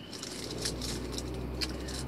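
Car engine idling as a low steady hum heard inside the cabin, with faint small rattles and clicks of things being handled.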